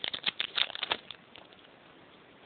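A Pokémon trading-card booster pack's foil wrapper and cards crinkling and rustling in the hands: a quick run of crackles that stops about a second in.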